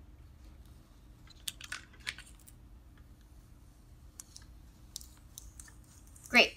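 Faint, scattered light clicks and ticks of fingers pressing and working transfer tape over a vinyl decal on wood, a few seconds apart.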